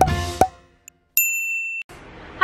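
The end of an intro jingle, with a sharp hit about half a second in. After a brief gap comes a steady, high electronic beep lasting about two-thirds of a second, which ends in a click.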